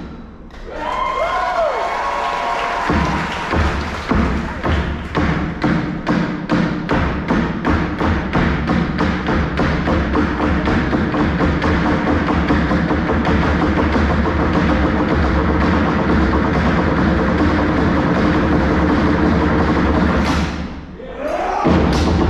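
Live stage percussion: several performers striking drums and other percussion in a quick, steady rhythm over an amplified backing track with a steady bass. A short rising-and-falling call sounds about a second in, and the beat breaks off briefly near the end.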